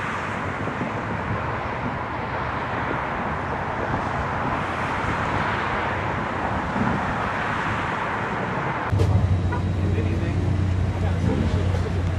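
Steady road traffic noise. About nine seconds in, it cuts suddenly to a louder steady low hum with faint voices.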